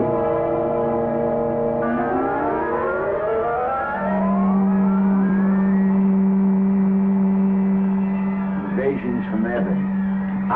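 Science-fiction rocket ship sound effect in flight: several steady tones, then a whine rising in pitch from about two seconds in, settling into a steady low drone.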